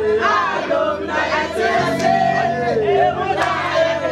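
A group of voices singing and shouting excitedly together over music with sustained low notes.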